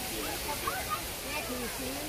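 Faint, scattered chatter of other people's voices over a steady rushing background noise.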